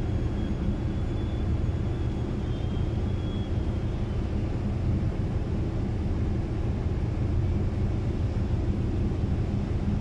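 Steady low engine rumble from the passenger ship MV St. Pope John Paul II as it gets under way and pulls away from the pier. A faint high whine sits over it for the first few seconds.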